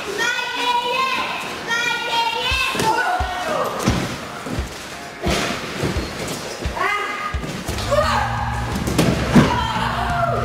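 Repeated thuds and slams of wrestlers' bodies hitting the wrestling ring, several heavy impacts a second or so apart, amid high-pitched shouting from a young crowd.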